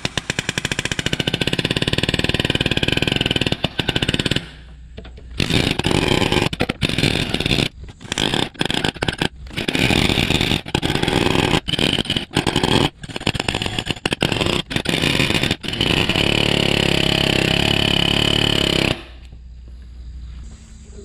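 Palm nailer hammering rapidly against a rust-seized PTO shaft's telescoping tube, which has been heated with a torch, to vibrate the stuck sections free. It runs in a long burst, stops briefly about four seconds in, then goes in many short bursts and ends with a steady run that cuts off about a second before the end.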